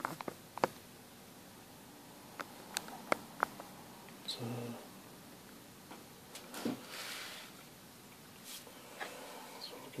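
Light handling noises on a workbench: a few sharp clicks and taps in the first three or four seconds, then a softer scraping rustle as the Variac's grey metal cover is picked up.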